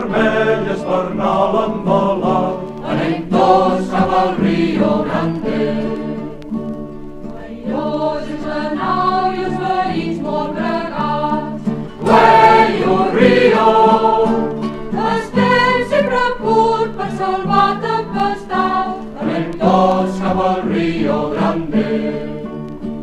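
A group of voices singing a folk song together in chorus, in continuous sung phrases over a steady low accompaniment.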